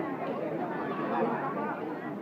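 Crowd chatter: many people talking at once, their voices overlapping with no single speaker standing out.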